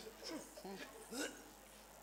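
A man's voice speaking in short, quiet phrases.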